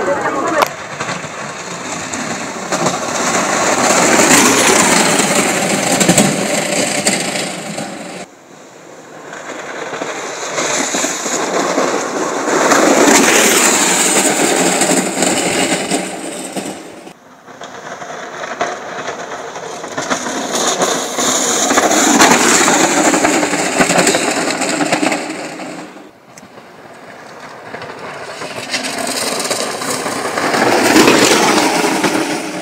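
Unpowered gravity-racing carts rolling fast downhill on asphalt past the camera, their wheels giving a rushing rumble that builds and fades with each pass. Four such passes, each cut off suddenly by the next.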